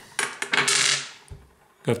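Polished tumbled stones clicking and clattering against one another as a hand sorts through a loose pile and picks one out. There are a few sharp clicks, then a short clatter about half a second in.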